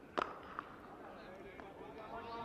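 Cricket bat striking the ball once, a single sharp crack just after the start, with a fainter click about half a second later over faint open-ground ambience.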